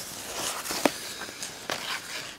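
Soft rustling of a large paper booklet being handled and shifted by hand. Two brief sharp clicks, one a little before the middle and one near the end.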